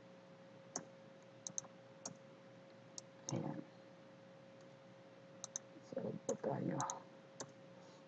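Scattered sharp clicks of a computer mouse and keyboard, about ten of them, some in quick pairs, over a faint steady hum.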